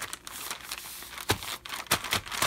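Sheets of freshly dried, crisp annatto-dyed paper being handled, rustling and crinkling in quick little crackles, with two sharper knocks about two-thirds of the way through and near the end.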